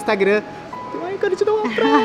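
Women's voices over background music.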